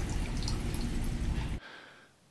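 Coffee trickling from a laboratory-glass spout into a mug: a steady pouring hiss that cuts off suddenly about one and a half seconds in.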